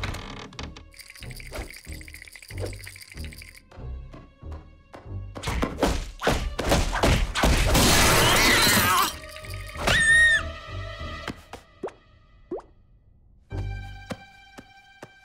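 Cartoon music with a steady, plodding beat and small knocks; about halfway through, a long, loud clattering crash of objects tumbling down wooden stairs. Just after it comes a short high tone that bends up and falls away.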